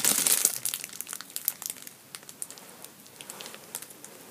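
Clear plastic food wrapper crinkling and crackling as hands grip it and pull a packaged toast apart inside it; the crinkling is densest in the first second or so, then thins to a few scattered crackles.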